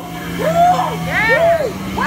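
Two drawn-out cries of "oh" from people's voices, each rising then falling in pitch, over a steady low hum.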